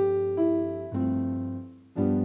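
Piano accompaniment for a vocal warm-up exercise moving upward: a chord struck at the start and another about a second in, each fading away, with a melody note changing between them.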